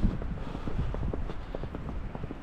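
Footsteps crunching through deep fresh snow, a steady run of soft, irregular crunches.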